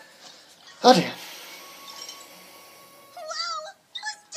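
A single short, loud, cat-like yowl about a second in, followed by a faint held tone and a brief voice-like sound near the end.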